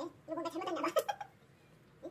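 A woman's voice, brief and without clear words, lasting about a second, with two sharp clicks that fit pruning shears snipping olive branches.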